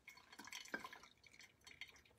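Faint, scattered drips from a pour-over coffee brew as hot water is poured from a gooseneck kettle into a cone dripper, with one light click about three quarters of a second in; otherwise near silence.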